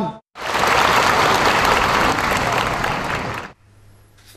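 Audience applauding, starting a moment in and cutting off suddenly about three and a half seconds in.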